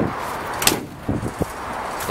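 A vehicle door being worked: one sharp clunk about two-thirds of a second in, then a couple of lighter knocks.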